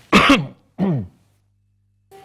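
A man clearing his throat with two coughs into his fist: a loud first one just after the start, then a shorter second one about a second in.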